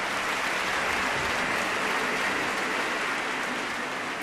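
Audience applauding steadily in a large hall.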